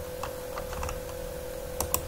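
A few scattered clicks of a computer mouse over a faint steady hum, the clearest two close together near the end.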